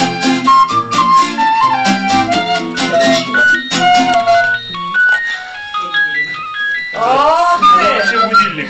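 Several recorders playing a folk-style tune together over a rhythmic acoustic guitar accompaniment. About four seconds in, the ensemble thins to one recorder playing separate held notes, and near the end a voice slides in pitch.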